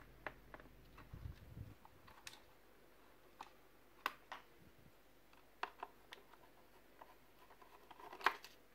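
Faint, sparse clicks and ticks of a screwdriver and fingers working at a laptop's plastic case and metal hard-drive caddy, with a soft bump between one and two seconds in, over near silence.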